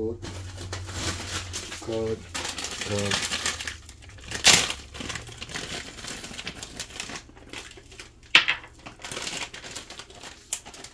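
Kitchen handling noises: rustling and small knocks as containers and ingredients are moved, with two sharp clacks, one about four and a half seconds in and one near eight seconds, and a couple of brief voice sounds.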